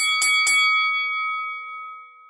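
Bell-like chime struck three times in quick succession, about a quarter second apart, then ringing out and fading away: a title-card sound effect.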